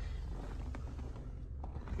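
A low, steady rumble with a few faint clicks, as a phone is handled inside a parked car.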